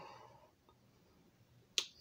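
Quiet room tone after a voice trails off, broken by a single short, sharp click near the end.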